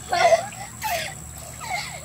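Young children's short wordless squeals, three falling cries about a second apart, with water splashing in an inflatable paddling pool.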